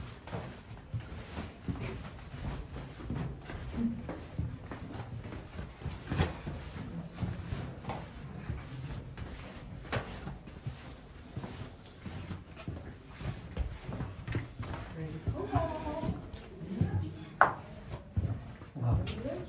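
Footsteps and shoe scuffs on the stone floor of a narrow rock tunnel, with scattered knocks and rubbing as people brush the walls, over a low rumble of handling noise; faint voices near the end.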